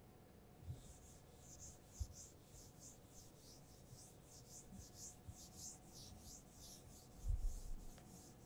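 Whiteboard duster wiping across a whiteboard in quick back-and-forth strokes, about three a second, a faint dry swishing. A soft low thump comes near the end.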